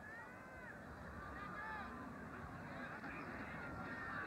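Stadium crowd noise at a college football game: a steady din with many overlapping high shouts and whoops rising and falling above it as the play gets under way.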